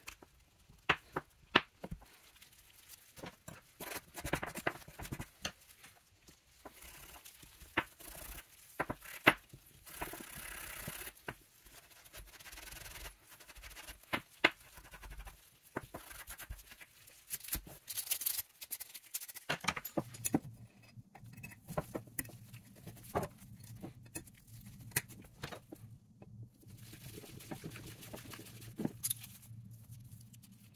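Small metal parts of a Carcano rifle being scrubbed and scraped by hand to clean off rust and grime after boiling: scratchy scrubbing strokes with frequent sharp clicks and taps of metal. A low steady hum comes in about two-thirds of the way through.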